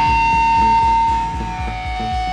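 Live rock band playing an instrumental passage: a long held high note over a steady drum beat.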